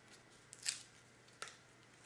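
Faint handling of a small cardstock tag backed with foam dimensionals: two brief paper rustles, a little under a second apart.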